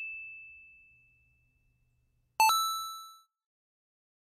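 Two ding chime sound effects. The ring of one fades away over the first second, and a second, bell-like ding with several overtones sounds about two and a half seconds in and dies away within a second.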